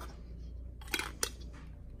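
Small scissors snipping through a thin plastic soap-pump dip tube: two short, sharp snips about a second in.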